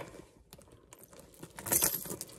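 Chunky metal chain purse strap clinking and rattling as the bag is handled, faint at first, with a quick louder cluster of clinks near the end.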